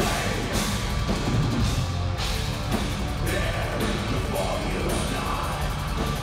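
Metal band playing live: distorted electric guitar over a full drum kit, a dense, continuous wall of sound at steady loudness.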